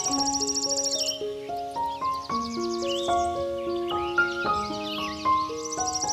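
Slow piano music of long, held notes, mixed over a nature-ambience bed. High insect trilling, like crickets, stops about a second in and returns near the end, with short high calls in the gap.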